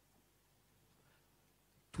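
Near silence: faint background hiss, with a man's voice starting a word at the very end.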